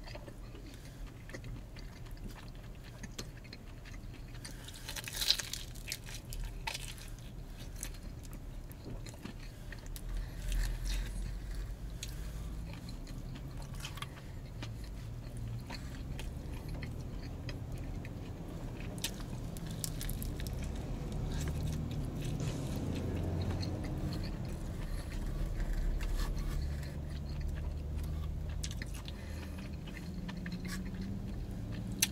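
A man chewing mouthfuls of pizza close to the microphone: irregular small wet clicks and crunches throughout, with one sharper click about five seconds in.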